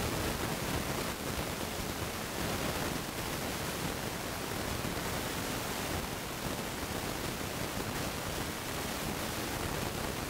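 Steady, even hiss with no distinct events.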